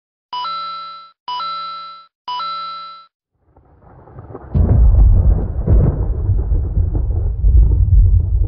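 Three identical short electronic chime tones, each stepping quickly up in pitch, about a second apart. A heavy, low rumbling noise then swells in and turns loud about four and a half seconds in.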